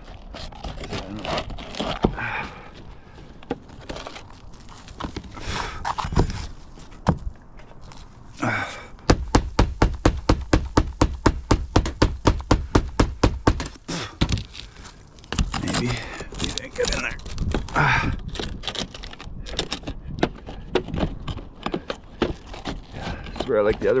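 Steel pry bar working against old asphalt shingles and gutter metal: scattered knocks and scrapes. About nine seconds in there is a quick run of sharp metallic knocks, about six a second, lasting some five seconds.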